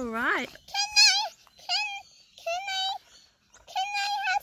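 A high-pitched voice making about five short wordless sounds, each around half a second long, the first swooping up and then down.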